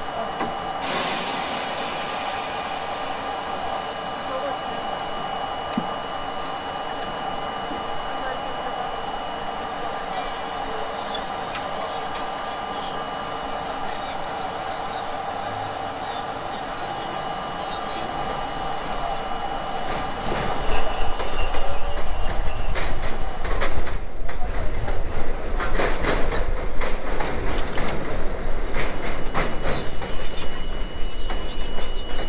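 R32 subway car standing at an elevated station with a steady electrical hum, after a short hiss about a second in. About two-thirds of the way through, the train pulls away, and the rumble and clatter of wheels on the elevated track grow louder.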